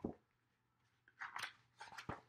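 A paperback picture book being handled, its paper cover and pages rustling: a soft thump at the start, then crisp paper rustles about a second in.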